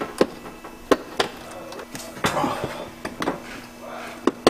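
About half a dozen sharp knocks and clicks, irregularly spaced, as a plastic fender flare and its mounting clips are handled and pressed onto a truck's fender.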